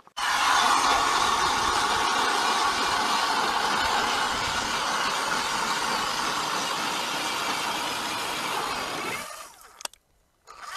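Electric ice auger drilling a hole through the ice: the motor starts suddenly and the blade grinds steadily through the ice, then it winds down and stops about a second before the end.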